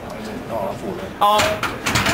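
A short shout of "Ja" about a second in, together with a few sharp knocks and clanks from the loaded barbell and its plates as the lifter walks the bar back toward the squat rack.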